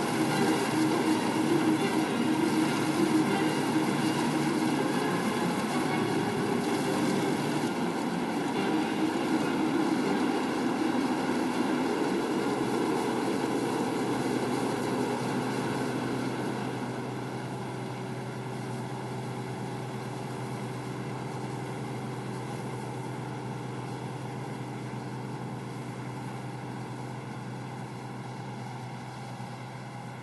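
Claas combine harvester running as it cuts wheat: a steady drone of engine and threshing machinery. It grows quieter and steadier about halfway through as the machine moves away.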